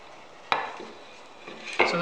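A single sharp knock of wood on wood about half a second in, as turned wooden platter pieces are set against a turned wooden bowl, followed by faint handling.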